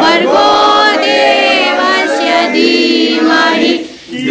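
A group of men and women singing together unaccompanied, with long held notes.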